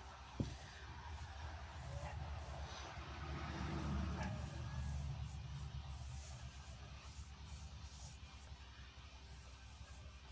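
Faint handling sounds of hands pressing and flexing a soft, not fully cured epoxy resin bowl, with a soft click about half a second in and a low rumble that swells in the middle.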